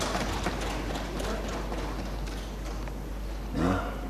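Members of parliament thumping their wooden desks in applause: a thick patter of knocks that thins out after the first second or so. A brief voice near the end.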